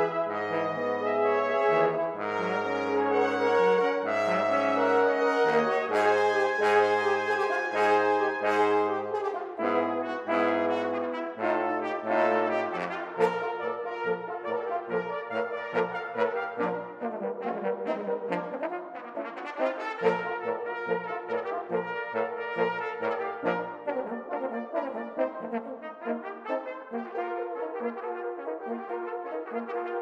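Brass quintet of two trumpets, French horn, trombone and bass trombone playing. For about the first twelve seconds it is a full, loud passage over long held bass notes; then it turns to a lighter, quieter passage of short, quicker notes.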